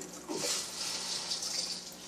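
Aquarium air bubbles streaming up through the tank water and bubbling at the surface, a steady watery hiss.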